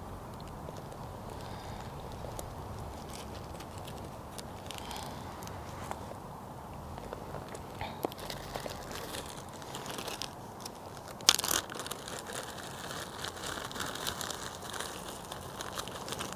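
Plastic zip-top bag crinkling as chopsticks pick slices of raw ribeye out of it, with small clicks and one sharp click about eleven seconds in, over a steady low hiss.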